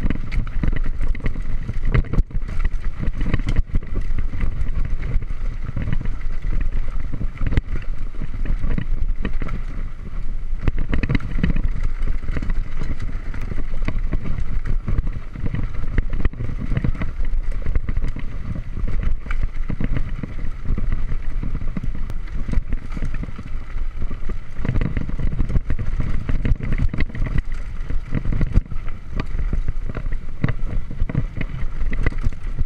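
Mountain bike (a Giant Trance X3) riding fast over a rocky, gravelly dirt trail, heard from a chest-mounted GoPro: continuous wind rumble on the microphone with a constant clatter of knocks and rattles from tyres and bike over stones.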